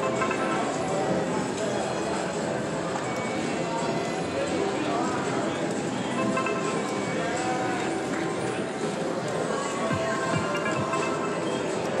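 Casino floor din: a video slot machine spinning its reels with electronic jingles and chimes, amid many other machines' tunes and background voices, steady throughout.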